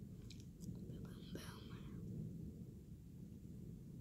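A person whispering briefly about a second in, over a steady low rumble.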